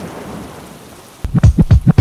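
Rain and thunderstorm sound effect, a steady hiss of rain that slowly fades, then about a second in a quick run of loud low thumps leading straight into music.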